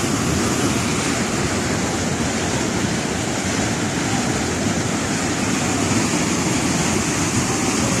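Floodwater from heavy rain rushing as a torrent down a concrete channel, a steady, loud rush of water.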